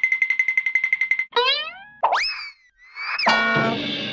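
Edited-in cartoon sound effects: a rapid pulsing beep-like tone that cuts off about a second in, then springy rising boing glides, a whistle that swoops up and down, and from about three seconds a held, bright chord.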